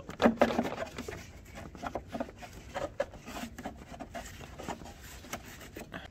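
A new cabin air filter being worked by hand into its plastic housing: irregular rubbing, scraping and clicking of the filter frame against the plastic, with the sharpest knocks in the first half second.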